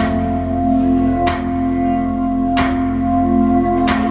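Live music: a sustained chord on keys held under four sharp hits evenly spaced about 1.3 seconds apart.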